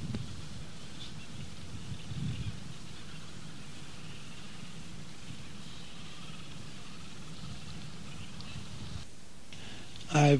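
Antarctic outdoor ambience: faint animal calls over a steady hiss, with a brief low sound about two seconds in.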